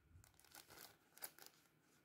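Near silence with a few faint crinkles of thin plastic packets of fishing rigs being handled, the clearest a little over a second in.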